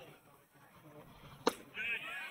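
A pitched baseball popping into the catcher's leather mitt: one sharp, very short smack about one and a half seconds in.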